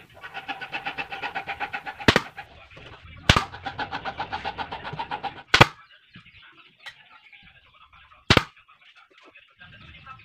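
Kodenki pneumatic nail gun firing nails into wooden box panels: four sharp shots at uneven intervals. A faint rapid pulsing sound runs underneath through the first half.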